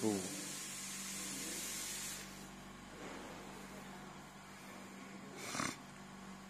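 Faint room tone: a steady low hum, with hiss during the first two seconds and a brief breathy noise near the end.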